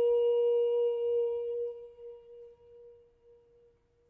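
A single held musical note, steady in pitch with faint overtones, fading away over about two seconds into near silence.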